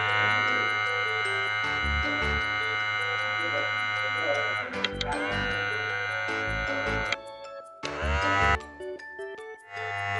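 Battery-powered toy iron playing its electronic sound effects: a held, many-toned electronic sound over a low hum for about the first half, more tones until about seven seconds in, then a short hiss near the end.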